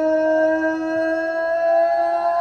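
Male singer holding one long sung note.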